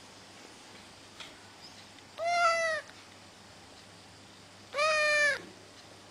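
A drowsy grey male cat, lying down, meows twice: two short meows about two and a half seconds apart, each bending slightly up and then down in pitch.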